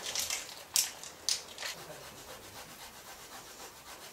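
A block of freezer-chilled marzipan being grated by hand: a few sharp rasping strokes in the first second and a half, then fainter, even scraping.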